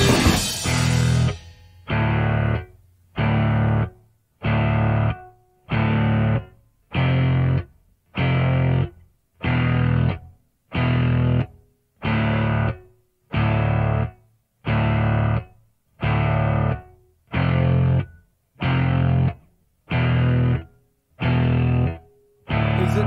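Rock music: a distorted electric guitar chord, heavy in the low end, struck about once a second and stopped dead between strikes, after a dense, loud opening second of full band.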